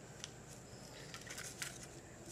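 Faint rustling and a few light clicks, mostly in the second half, as a pine root and a broken wooden wedge are handled over dry leaf litter.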